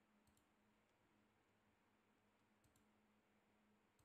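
Near silence with a faint steady hum, broken by two faint clicks of a computer mouse, one just after the start and one past halfway.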